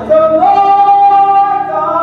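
A woman singing a gospel song. She steps up to one long held note, then slides higher near the end.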